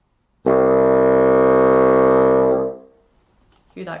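Bassoon playing a single sustained low C, its lowest note in the piece, held steady for about two seconds before dying away: a low and resonant tone.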